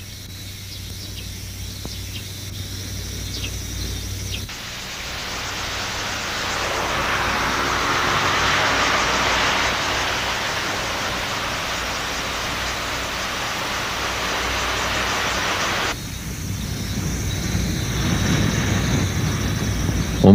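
Steady rushing wind and road noise from a moving car. A quieter stretch with a low hum gives way to the loud rush about four seconds in, and the noise turns lower and rumbling near the end.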